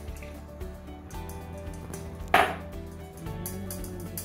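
Background music with steady held notes, over water being poured from a glass measuring cup into a stainless steel mixing bowl. A single sharp knock about two and a half seconds in is the loudest sound.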